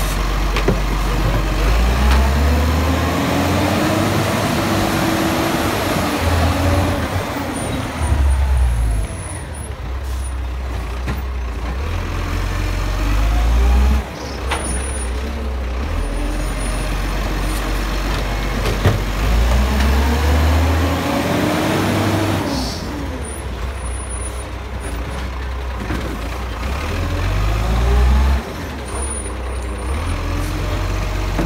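Dennis Eagle side-loader garbage truck at work: its diesel engine revs up and down twice as the automated arm lifts and empties bins. Between stops the engine runs steadily, with air-brake hisses and sudden drops in level as the truck pulls up and moves off.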